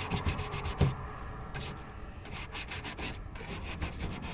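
Stiff bristle brush scrubbing paint across sketchbook paper in quick back-and-forth strokes, several a second, with a short pause midway. A couple of low thumps come in the first second.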